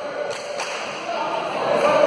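Two sharp slaps of a volleyball being struck during a rally, a fraction of a second apart, followed by players' and spectators' voices rising toward the end.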